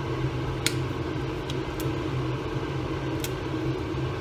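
Steady hum of a kitchen fan, with a few brief crackles as dried chillies and leaves are handled in the pan.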